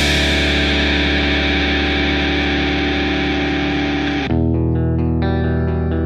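Alternative rock music with a heavily distorted electric guitar playing held chords. About four seconds in it cuts abruptly to a thinner part of separate picked guitar notes with effects on them.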